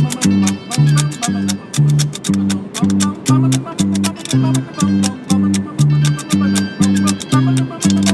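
Bluegrass instrumental kickoff at a steady boom-chuck tempo: bass notes alternating between two pitches about two a second, with chopped chords on the off-beats and a Martin D-18 acoustic guitar. The bass and mandolin parts come from iPod instrument apps.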